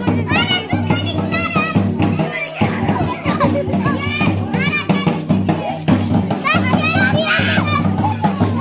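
Many children shouting and chattering at once, over live music with a drum.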